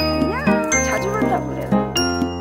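Light background music with bell-like notes. Over it, a dog gives a few short high-pitched whining cries that rise and fall in pitch during the first second and a half.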